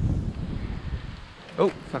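Wind buffeting the microphone, a low rumble, while walking; about a second and a half in it gives way to a man's startled exclamation as he nearly trips.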